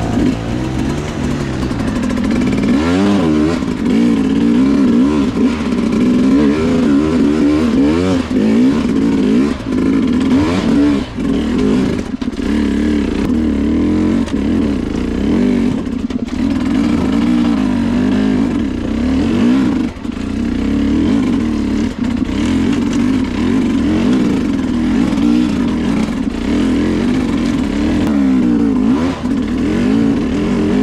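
Enduro dirt bike engine revving up and down continuously while climbing a steep, loose rocky hill at low speed, with a few brief knocks along the way.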